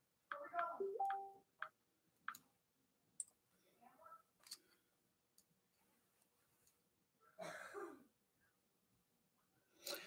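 Near silence with room tone and a few faint, scattered clicks, spaced irregularly about a second apart.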